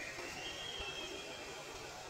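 Steady wash of pond water running. A faint high whine rises in pitch and then holds steady, fading near the end.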